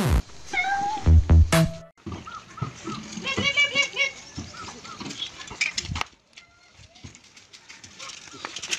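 A sharp falling sound effect, then a cat meowing repeatedly over background music. It drops much quieter for the last couple of seconds.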